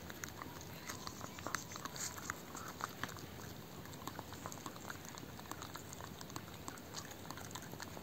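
Dog gnawing at a small beef bone: faint, irregular clicks and scrapes of teeth on bone.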